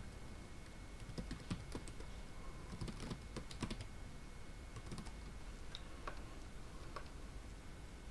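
Faint computer keyboard typing: short runs of keystrokes, busiest about three seconds in.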